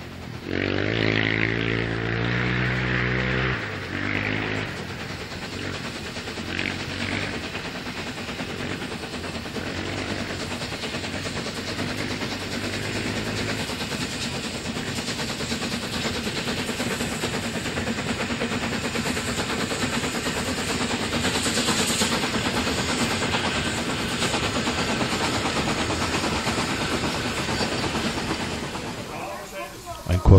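Narrow-gauge steam locomotive working a passenger train past in the distance: a steady running and exhaust noise that swells a little past the middle and fades near the end. In the first few seconds a small motor engine is heard, its pitch stepping.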